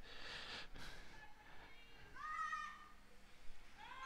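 Faint, distant shouting in a girl's high-pitched voice: one drawn-out call about two seconds in, with more far-off shouting starting near the end.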